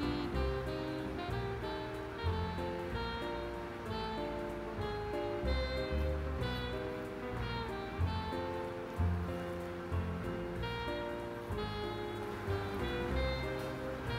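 Instrumental background music with held, changing notes over a soft low pulse.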